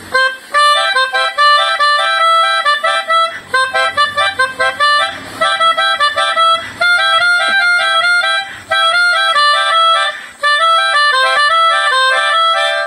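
Melodica (pianika) playing a quick melody of short, stepped notes in phrases with brief breaks, blown through its mouth tube while the keys are fingered.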